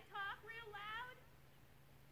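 A high-pitched voice: a few short, quick syllables in the first second, then quiet.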